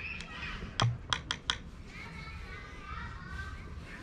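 Background chatter of distant voices. About a second in come four sharp clicks in quick succession, roughly a quarter of a second apart.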